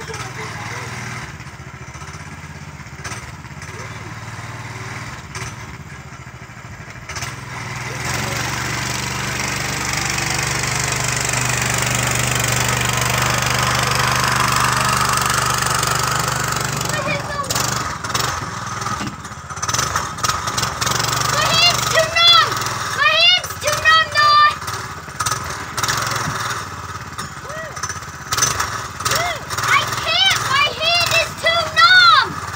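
A go-kart's small engine running, growing louder about eight seconds in and fading again after about sixteen seconds as the kart drives by in the snow. In the later part, high-pitched voices shout over the engine.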